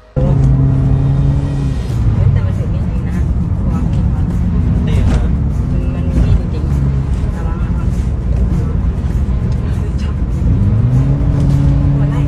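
Vehicle engine running steadily, heard from inside a moving car, with a low drone throughout. The pitch climbs about ten seconds in as the vehicle speeds up.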